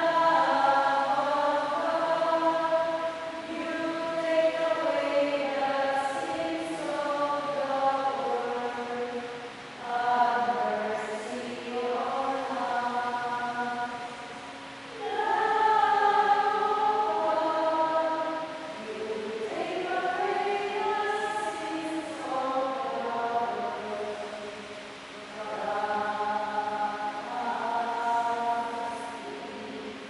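A choir singing a hymn in sustained phrases, with brief pauses between phrases every few seconds.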